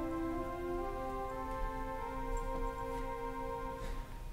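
Three-manual church organ playing slow, sustained chords, with single voices in the held chord moving to new notes. Near the end the chord is released.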